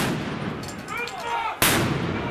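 Two loud bangs of weapon fire, one right at the start and one about one and a half seconds in, each with a short echo; a voice shouts in between.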